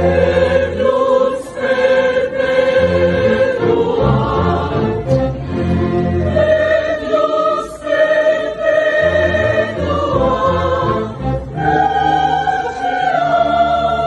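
Outdoor orchestra of violins and double bass playing a classical piece, with long held notes over a sustained bass line.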